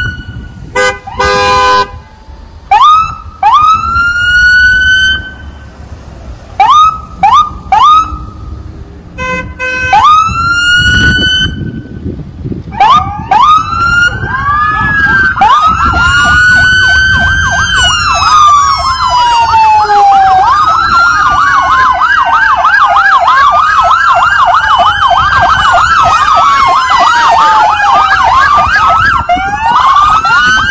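Police car sirens giving short rising whoops, broken by a few horn honks; from about halfway, several cruisers' sirens wail and yelp together, overlapping continuously as the procession passes close by.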